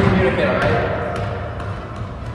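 Indistinct voices with a few light thumps, steadily fading out.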